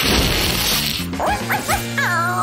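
A cat hisses, then a small dog gives short rising yelps near the end, over background music.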